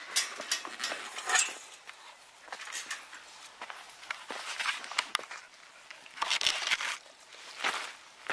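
Footsteps on dry, stony dirt, with irregular scrapes and rustles and a longer rustling stretch about six seconds in.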